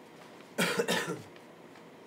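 A person coughing twice in quick succession, about half a second in, over faint steady background hiss.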